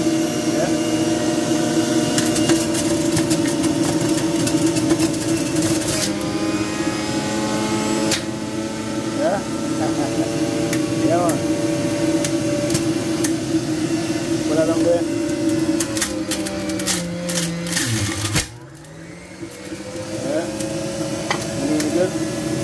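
Electric juicer motor running steadily while produce is ground, with bursts of crunching clicks. About three quarters of the way through, the hum drops in pitch and level, then winds back up.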